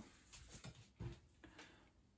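Near silence with a few faint, short taps and rustles of handling, the loudest about a second in.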